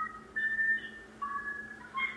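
A short run of high, pure whistle-like notes, each a fraction of a second long and stepping between pitches, some overlapping.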